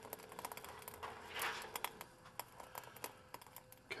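Faint, scattered light clicks and ticks at an uneven pace over a faint steady tone, with a brief soft hiss about a second and a half in.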